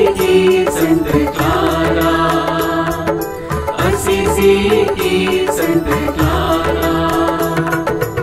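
Instrumental interlude of a Hindi devotional hymn to Saint Clare, with a steady percussion beat under a melody line and no singing.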